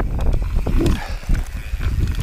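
Mountain bike rolling fast downhill over grass: a steady low rumble of tyres and suspension with wind on the microphone, surging roughly every second, and scattered sharp rattles from the chain and frame.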